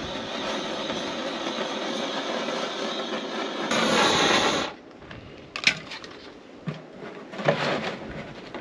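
Handheld gas blowtorch on a canister hissing steadily as its flame heats a PVC pipe fitting to soften it, louder for about a second before it cuts off about halfway through. A few short plastic knocks follow as the fitting is handled and pushed into place.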